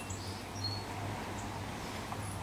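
A few faint, short, high bird chirps over a steady low hum.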